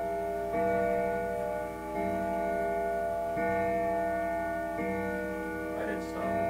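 A melodic chime playing slow sustained bell-like notes, a new note about every one and a half seconds.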